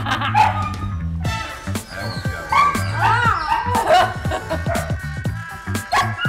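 Puppies giving a run of short, high-pitched barks about halfway through, over background music. A woman laughs at the start.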